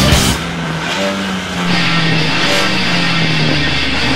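Heavy rock music soundtrack. A loud passage with drums breaks off just after the start into a sparser stretch with a held low note, and the music fills out again in the second half, the bass coming back in near the end.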